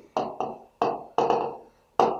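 A pen tapping and knocking against a touchscreen whiteboard while words are written, about six short, sharp taps in an uneven run.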